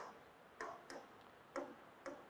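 A few faint, sharp taps of a stylus on an interactive display screen, about four at irregular intervals, as tools are selected on the on-screen palette.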